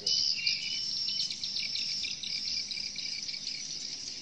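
Swiftlets' dense, high twittering chirps, continuous with no break, as the flock circles a swiftlet house and goes in through its entry holes.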